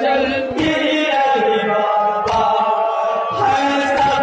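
Male voices chanting a Shia noha (mourning lament) together in long, held melodic lines. About every second and a half comes a sharp thump, the beating of chests in matam.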